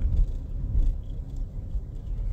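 Low, uneven rumble of road and engine noise heard inside the cabin of a moving car.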